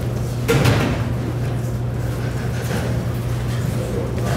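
Spatula stirring and scraping a thick flour and butter batter around a stainless-steel mixing bowl, with a louder scrape about half a second in, over a steady low hum.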